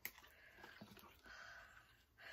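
Near silence: room tone, with faint rustling as a bundle of thread cards is picked up and handled.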